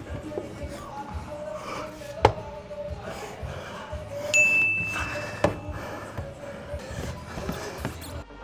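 A climber's hands and shoes knocking and scuffing on plastic bouldering holds, with two sharp knocks, one about two seconds in and one past the middle, over background music. A short, high, steady ding sounds about halfway through.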